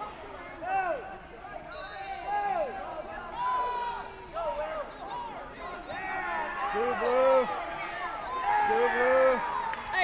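Wrestling shoes squeaking in short chirps on the vinyl mat, mixed with shouting voices in a large gym hall.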